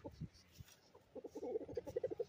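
Hens clucking, with a fast run of short clucks in the second half.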